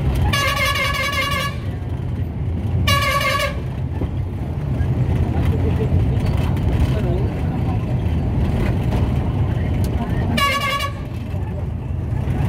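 Vehicle horn honking three times, a long blast, then a short one, then another short one near the end, over the steady rumble of a moving vehicle's engine and road noise.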